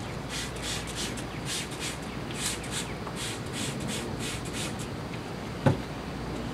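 Hand trigger spray bottle squeezed again and again, a quick series of short hissing spritzes about three a second, wetting freshly packed potting soil. A single sharp knock near the end.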